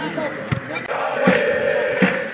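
A supporters' bass drum is beaten in a steady beat, about one thump every three quarters of a second, under football fans shouting and chanting, with one long held shout.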